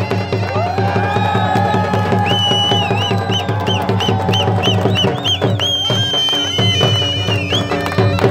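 A dhol drum beating a fast dance rhythm under a loud, high folk melody of long held notes and quick trills.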